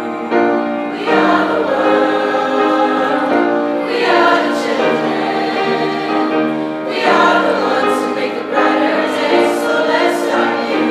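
A mixed high-school choir singing sustained chords, growing louder and fuller about a second in.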